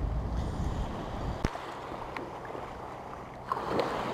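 Shallow surf washing on a sand beach, with feet wading through the water, and wind rumbling on the microphone for the first second and a half. A sharp click comes about one and a half seconds in, and a rush of water near the end.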